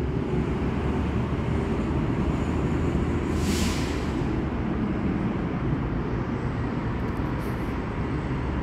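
Steady rumble of traffic on a nearby street, with a brief hiss about three and a half seconds in.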